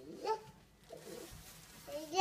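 A toddler's short, high call about a third of a second in, followed by faint low babbling.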